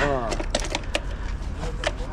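A short voiced exclamation that falls in pitch, then several sharp clicks and taps.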